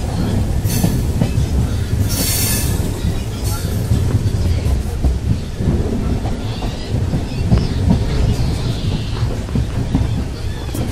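Malwa Express passenger train running into the station, heard from inside a coach at an open window: a steady low rumble of wheels on the rails, with clicks over the rail joints. There are short hissing bursts about a second in, at about two seconds and at three and a half seconds.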